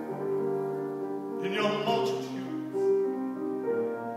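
Piano accompaniment to a show tune, holding sustained chords with a few new notes struck during a pause between sung lines.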